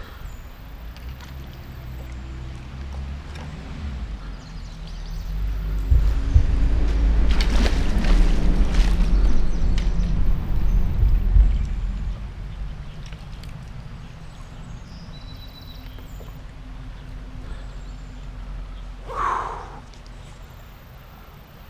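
Wind buffeting a wearable camera's microphone over river water, a low rumble that swells for about six seconds in the middle, with water splashing around a landing net held in the current.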